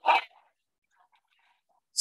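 One short, loud dog bark right at the start from a dog in the middle of a fight, followed by faint scattered sounds.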